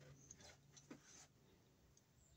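Near silence: room tone, with a few faint clicks in the first second.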